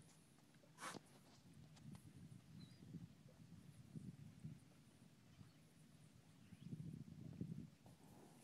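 Near silence: faint, irregular low slaps of small waves against a boat hull, with one sharp click about a second in.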